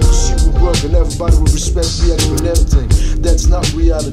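Hip hop track: rapped vocals over a beat with heavy bass and regular drum hits.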